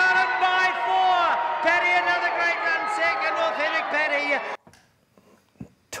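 A horse-race caller's excited, high-pitched commentary on the finish, cutting off suddenly about four and a half seconds in to near silence.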